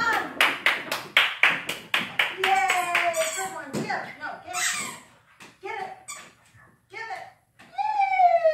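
A quick run of hand claps, about four a second, for the first two and a half seconds, followed by a person's high voice calling out briefly a few times.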